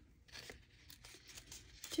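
A sheet of paper torn by hand in a series of faint, short rips.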